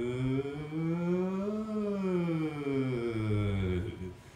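A man's voice toning one long, sustained vowel, sliding smoothly up about an octave to a peak partway through and back down to the low starting pitch, then stopping just before the end. This is a vocal toning exercise: the voice is swept up and down to feel where it resonates in the body.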